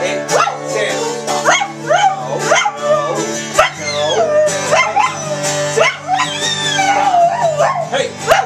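Border collie howling and yelping, a string of sharply rising yelps one or two a second with some longer wavering howls, over acoustic guitar chords.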